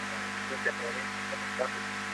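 Steady electrical hum with several fixed tones on a poor telephone connection, with a few faint, broken fragments of a man's voice.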